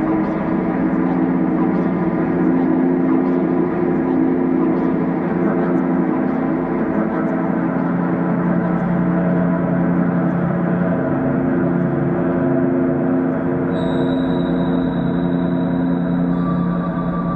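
Ambient synthesizer drone: layered, sustained tones held steady and washed in delay and reverb. A thin, high tone joins near the end.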